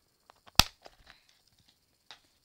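A single sharp click about half a second in, followed by a few faint ticks, as Minion bracelets are put back into their small box.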